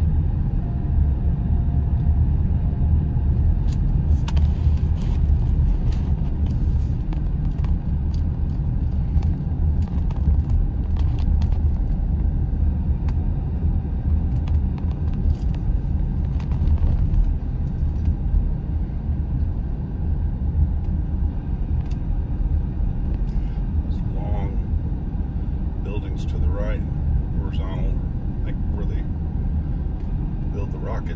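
Car driving at road speed, heard from inside the cabin: a steady low rumble of tyres and engine with scattered light ticks. A faint voice comes in near the end.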